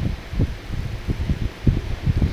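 Thin spring roll pastry sheets being peeled apart by hand: soft rustling with a series of low, irregular bumps.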